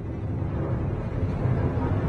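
Logo-intro sound effect: a low rumbling noise swell that grows steadily louder and brighter, building up.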